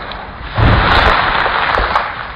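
Bucket of ice water pouring down over a person and splashing, a rushing splash that jumps to its loudest about half a second in and holds.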